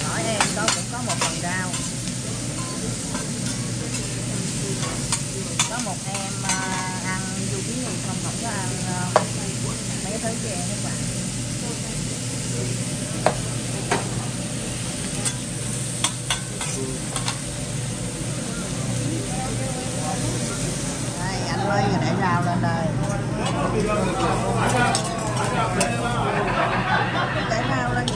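Sliced zucchini and onions sizzling on a steel teppanyaki griddle while a metal spatula stirs them, with sharp clacks of the spatula on the steel every second or two. In the last few seconds the hiss thins and restaurant voices come up.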